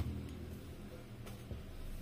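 Quiet handling of a folded saree on a table: a soft click near the start and a light tap about one and a half seconds in, over a faint low hum.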